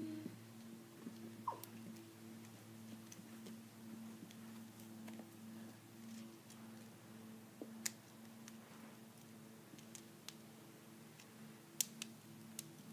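Faint clicks and rattles of plastic Lego Technic parts being handled and pressed together, with a sharper click just before the end as a part clips into place. A steady low hum runs underneath.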